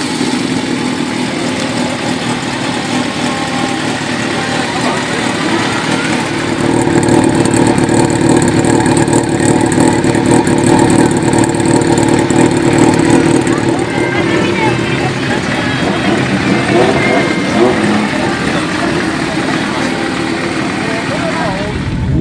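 Air-cooled inline-four Kawasaki motorcycle engine running just after being started, louder for several seconds in the middle before settling back.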